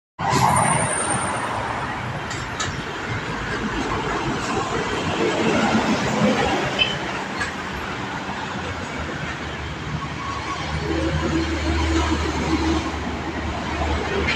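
Steady roadside highway traffic: trucks, cars and motorcycles driving past. A deeper engine drone swells over the last few seconds as a heavier vehicle passes.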